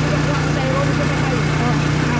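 A motorcycle engine idling steadily, with people talking over it.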